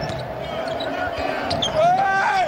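A basketball being dribbled on a hardwood court, dull thuds over steady arena crowd noise, with a short rising squeak near the end.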